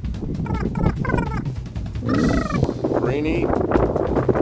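A bird giving about four short calls in a row, over a steady low rumble.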